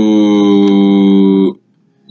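A man's voice holding a drawn-out hesitation sound, a long 'uhh', on one steady, slightly falling pitch for about a second and a half, then stopping abruptly.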